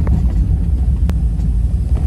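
Car driving along a rough dirt track, heard from inside the cabin: a loud, steady low rumble of engine and tyres, with a single sharp click about a second in.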